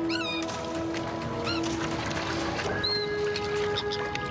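Terns calling: a few short high cries, one near the start, one about a second and a half in and one about three seconds in, over background music of held tones.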